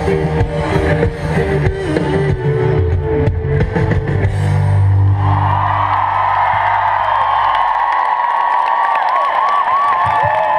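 Live rock band with drums and guitars playing the close of a song, heard from inside a big crowd. The band ends on a held chord that dies away about two thirds of the way through. From about halfway the crowd cheering, with high squeals and whistles, takes over.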